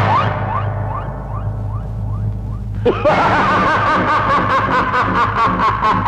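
Film soundtrack of battle effects and score: a quick string of short rising whistle-like glides, then a sudden hit about three seconds in, after which a wavering high tone runs over a fast, regular percussive beat.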